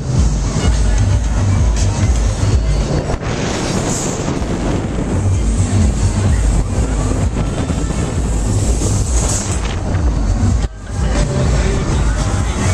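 Wind buffeting the microphone of a rider's camera as a Loop Fighter fairground ride swings through the air, with the ride's dance music playing underneath. The rush of wind cuts out briefly near the end, then returns.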